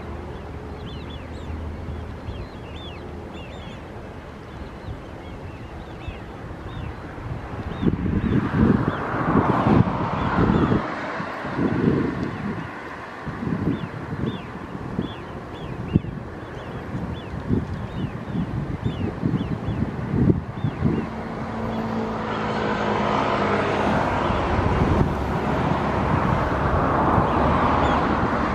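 Outdoor field recording at a duck-covered pond: wind buffeting the microphone in heavy gusts through the middle, over a steady scatter of many short, high bird calls. Over the last few seconds a vehicle's noise grows louder.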